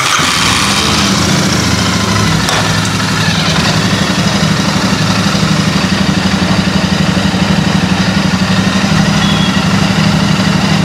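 Royal Enfield Interceptor 650's parallel-twin engine catching at the start and then running steadily at a low, even pulse. Its belt-driven rear wheel turns on the stand.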